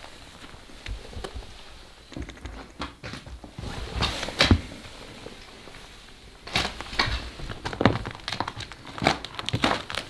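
Irregular crunches, scuffs and knocks of feet and hands moving over a floor covered in fallen plaster and debris, with a louder cluster about four seconds in and more toward the end.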